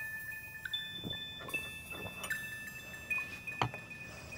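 Sparse background music of high, sustained chime-like notes, shifting between a few pitches every second or so, with a few faint clinks.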